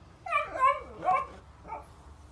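A puppy giving four short, high-pitched barks, the last one fainter.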